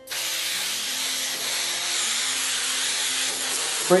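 Aerosol can of spray adhesive spraying in one continuous hiss, starting suddenly and holding steady.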